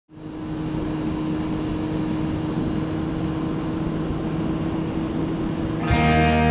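Kawasaki Z750R's inline-four engine running at steady revs on the move, with wind and road noise over it. The sound fades in at the start.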